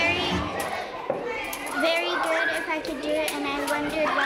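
Many children's voices in a school gym: chatter and calls overlapping, with scattered sharp clicks throughout.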